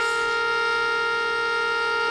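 Whistling stovetop tea kettle at the boil, holding one steady note with several overtones that sounds like a car horn.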